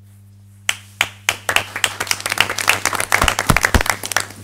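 Scattered hand clapping from a small group, joined by knocks and chair scrapes on a wooden floor as people sit back down, ending a minute of silence. It starts with a few separate claps under a second in, grows denser, and a few deep thumps come near the end over a steady electrical hum.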